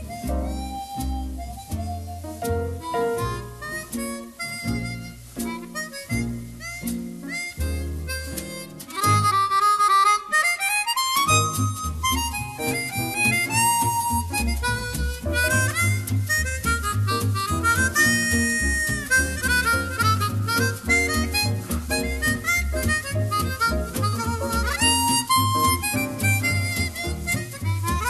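Chromatic harmonica playing a swing jazz melody, backed by piano, double bass, electric guitar and drums. The bass walks in even low notes underneath. The band gets noticeably louder about nine seconds in.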